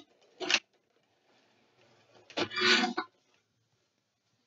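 Hands handling a plastic toy playset while its staircase is pressed flat. There is a brief scrape about half a second in, then a longer rustling scrape about two and a half seconds in.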